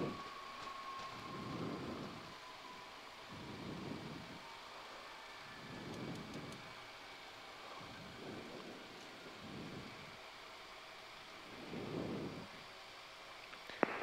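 Faint cabin noise of a Cessna CitationJet CJ1 rolling out after landing. A thin whine slides slowly down in pitch over the first few seconds as the engines wind back to idle. Soft low rumbling swells come every two seconds or so.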